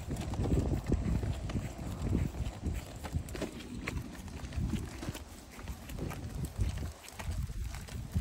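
Irregular clicking and rattling of a child's push-along tricycle rolling over a concrete footpath, mixed with footsteps, over low wind rumble on the microphone.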